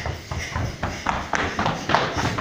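Running footsteps of several young children sprinting across a gym floor: quick, irregular footfalls overlapping one another.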